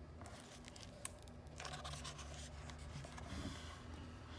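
Faint rustle and scrape of a hardcover picture book's paper page being turned by hand, with a single small click about a second in.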